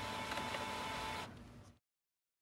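HP LaserJet Tank laser printer running quietly and steadily, with a faint high hum, fading out after about a second and a half.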